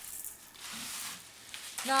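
Butter and olive oil sizzling in a pan as they heat, a soft steady hiss.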